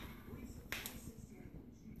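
Faint handling sounds as beer is poured slowly from a can over a spoon into a pint glass: a low hiss with two light clicks close together about three quarters of a second in.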